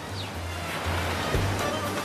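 Ocean surf washing onto a beach, a steady rushing hiss, mixed with music carrying sustained low bass notes.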